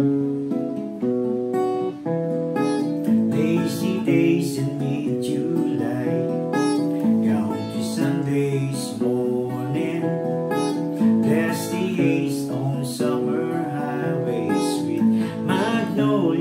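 Acoustic guitar with a capo playing an instrumental introduction, a steady run of ringing chords and single notes with occasional strums.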